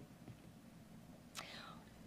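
Near silence: room tone, with one short, faint hiss about one and a half seconds in.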